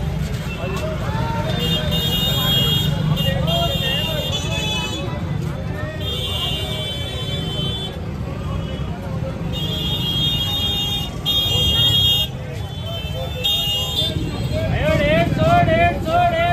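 Busy street-market bustle: many overlapping voices of a crowd, with vehicle horns sounding several times in short blasts. Near the end a loud, wavering voice calls out over the crowd.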